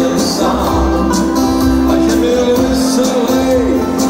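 Live country music played on banjo, mandolin and acoustic guitar, with a man singing held notes over the steady plucked rhythm.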